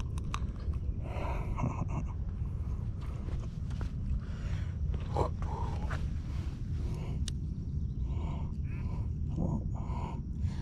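Hands unhooking and handling a caught porgy on rock: scattered short rustles and knocks over a steady low rumble.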